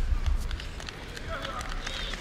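Arena hall noise: a low murmur from the stands with a couple of dull low thuds at the start. A voice rises over it about halfway through.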